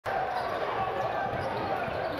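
Live basketball game sound: a steady arena crowd murmur with the ball being dribbled on the court.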